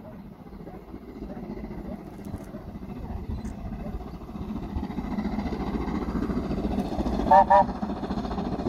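BR Standard Class 7 steam locomotive approaching, its low rumble growing steadily louder. Near the end come two short, loud toots, most likely the engine's whistle.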